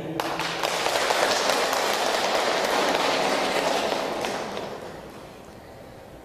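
Audience applauding, a dense patter of clapping for about four seconds that then dies away.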